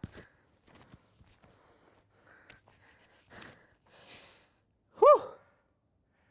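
A mountain biker breathing out and sighing, shaken after a crash, with faint footsteps and small clicks on loose rock. About five seconds in he gives one loud shouted "woo!"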